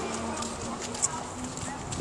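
Footsteps walking on a paved path, light irregular taps over a steady outdoor background with a faint low hum.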